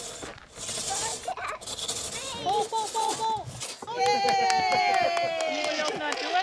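A two-man crosscut saw rasping through a log for the first couple of seconds, then voices, and a young child's long, excited shout that slowly falls in pitch near the end.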